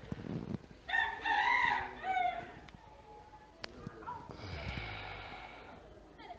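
A rooster crowing once, a high call in three or four segments lasting just over a second, followed by a fainter hiss with a low rumble.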